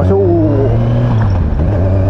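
Motorcycle engine running steadily while riding along a road, heard from on the bike.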